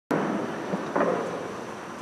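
Noisy room sound of a church picked up by the microphone, cutting in suddenly at the start, with a thump about a second in.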